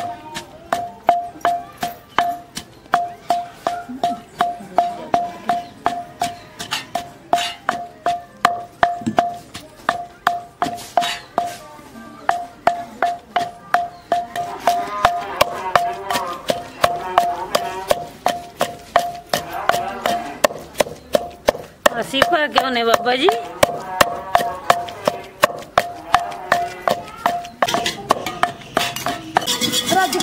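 Wooden pestle pounding a wet spice paste in an earthen clay mortar. The strokes fall in a steady rhythm of about two to three a second, and each knock gives a short ringing tone from the clay pot.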